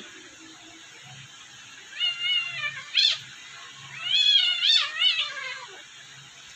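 Kittens mewing in high-pitched, wavering cries while play-fighting: one cry about two seconds in, a short sharp one at three seconds, and a longer run of cries between four and five seconds.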